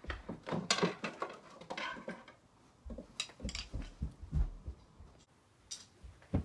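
Objects being picked up and moved about on a wooden bookshelf: an irregular run of light clicks, knocks and clatters, with a short pause a little over two seconds in.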